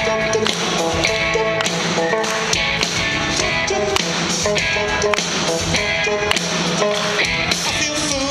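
Live rock band playing a passage without singing: frequent sharp drum hits over sustained instrument chords.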